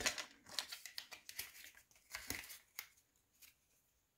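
Thin plastic sheet cut from a yogurt cup crinkling and rustling as it is bent and rolled into a tube by hand: a run of faint scratchy crackles that stops after about three seconds.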